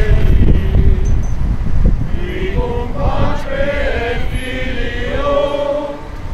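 A crowd of voices singing a chant together in unison, with held notes. A low rumble is loudest under the first two seconds.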